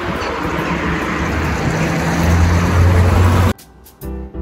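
City street traffic noise, with a vehicle's low engine hum growing louder about two seconds in. It cuts off suddenly near the end, and soft background music follows.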